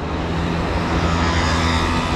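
Close city street traffic: a steady low engine hum, with a rush of road noise building in the second half as a motor scooter comes past.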